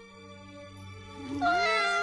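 Cartoon film soundtrack: quiet, steady held music tones. About a second and a half in, a loud, high, wavering tone starts, sliding up and down in pitch.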